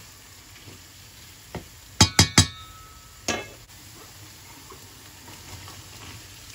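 Tomato and vegetable mixture frying in olive oil in a stainless steel pan, a faint steady sizzle. About two seconds in, a wooden spoon knocks three times in quick succession against the pan, which rings briefly, and once more a second later.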